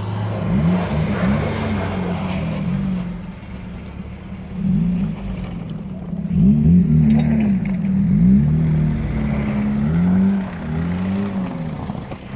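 Mercedes-Benz Sprinter 315 CDI's four-cylinder diesel engine revving up and down again and again as the van is drifted on snow. It is loudest in the second half, as the van passes close by.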